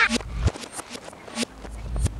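A few sharp knocks or thumps, spaced unevenly about half a second to a second apart, played backwards, over a low steady hum.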